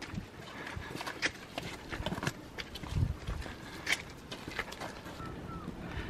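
Footsteps of hikers walking on a rocky granite trail: irregular taps and scuffs of shoes on stone over a low outdoor hiss.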